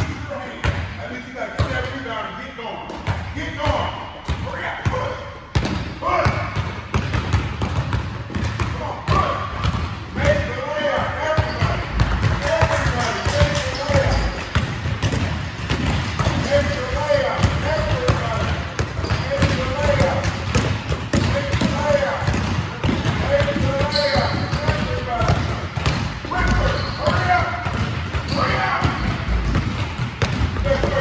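Several basketballs being dribbled on a gym floor, a quick, overlapping run of bounces, with voices talking over them.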